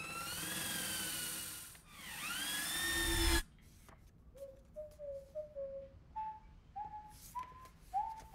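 Cordless stick vacuum cleaner running: its motor whine rises, dips for a moment and rises again, then cuts off suddenly about three and a half seconds in. Soon after, a faint flute melody of short stepping notes begins.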